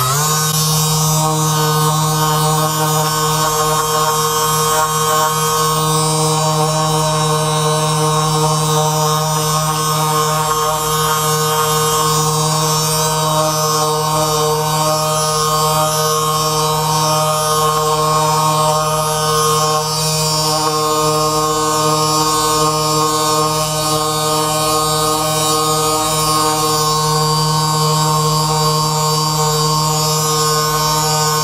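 Handheld percussion massage gun switched on and running steadily against the back muscles: a loud, even motor hum with a fast pulsing underneath.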